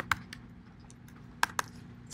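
A few keystrokes on a computer keyboard: a quick run of three clicks at the start and two more about a second and a half in.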